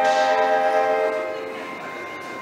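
Clarinet choir holding a sustained chord that fades away about a second and a half in.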